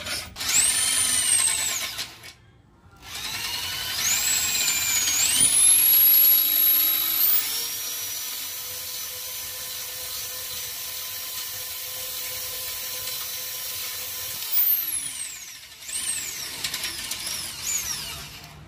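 An electric drill spins a flexible cable inside a Hero Splendor motorcycle's exhaust header pipe to scour out carbon. A short whining run dies away about two seconds in. Then the motor spins up again in steps, runs steadily with a high whine, winds down about 15 seconds in, and gives two short bursts near the end.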